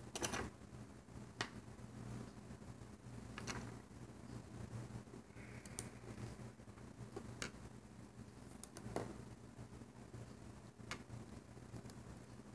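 Faint, scattered clicks and taps of hands working a plastic Alpha Loom, stretching rubber loom bands onto its pegs, about eight in all, over a low steady hum.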